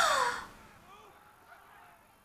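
A woman's short, high-pitched, breathy gasp that rises and then falls in pitch, over within about half a second.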